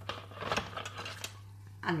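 A few light knocks and scrapes from a plastic mixing bowl being handled, with a spatula touching it.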